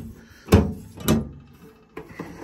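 A tractor's hinged metal fuel-filler door being unlatched by its push-button catch and flipped open: a sharp metallic clack about half a second in, then a second, softer knock about a second in.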